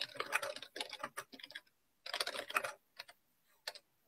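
Typing on a computer keyboard: two quick flurries of keystrokes, then a couple of single key clicks near the end.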